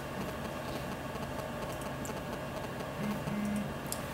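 Steady electrical hum of a meeting room, with a few faint ticks.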